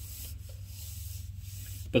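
Steady low hum with a faint even hiss of background noise.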